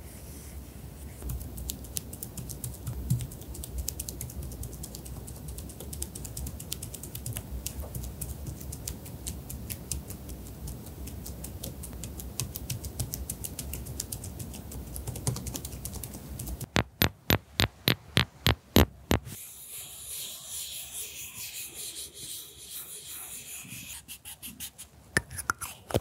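Liquid concealer squeezed from a LUNA tip-applicator tube and dabbed onto fabric: a dense, sticky crackle of small wet clicks for most of the time. Partway through comes a quick run of about a dozen sharp, evenly spaced clicks, followed by a softer hissing stretch.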